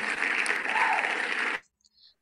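Recorded crowd applause, the sound the name-picker wheel plays on announcing its pick, heard through the shared-screen audio of a video call. It runs at a steady level and cuts off suddenly about one and a half seconds in.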